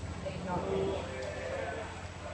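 Horse loping on sand arena footing, its hoofbeats faint under a steady low rumble, with a few short pitched sounds around the first second.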